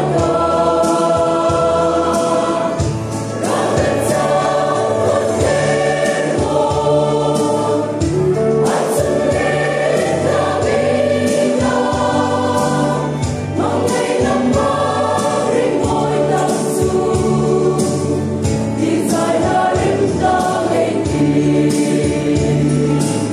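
Mixed choir of women and men singing a gospel song together in parts, loud and steady without a break.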